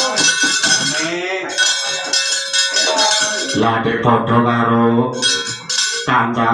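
Keprak, the metal plates hung on the wayang puppet box, struck in a rapid clattering run, with ringing metallic tones. About three and a half seconds in, a man's low voice joins over the ringing.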